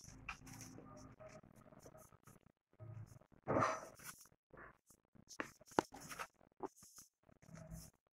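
Crepe paper rustling and crinkling in the hands as it is wound around a wire flower stem, in scattered soft crackles. About three and a half seconds in, a brief louder whine-like sound stands out.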